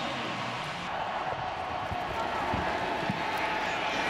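Steady noise from a football stadium crowd, with faint voices in it.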